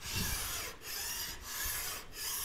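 Single-cut flat file rasping back and forth along the metal edge of a table saw's miter slot, about three strokes each lasting roughly half a second with short pauses between, shaving down a tight slot.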